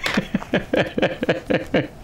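A man laughing: a quick run of short 'ha's, about five a second.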